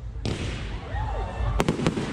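Klasek Triple DumBum, a three-shot 30 mm F2 salute tube with a silver fire pot, going off: a hissing rush of the fire pot starts a quarter second in, then two sharp bangs come about a quarter second apart near the end.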